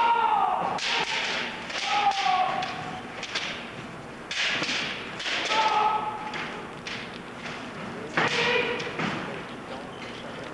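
Kendo fighters' kiai: about four long, loud shouts that bend in pitch. Between them come many sharp knocks and thuds from bamboo shinai strikes and stamping footwork on the stage.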